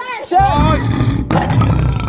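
A lion roaring: a loud, low, rumbling roar starts about half a second in and carries on, under the end of a chanted vocal line.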